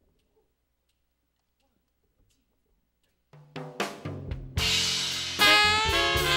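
A few faint ticks, then about three seconds in a jazz band starts a tune: drum hits and bass first, with the full band and horns (saxophone and trumpet) coming in loudly near the end.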